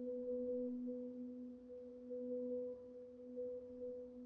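Mallet percussion quartet holding two soft, sustained pure tones an octave apart, steady in pitch and gently swelling and fading.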